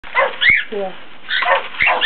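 Pet birds giving short, high, harsh calls, with a few sharp clicks between them.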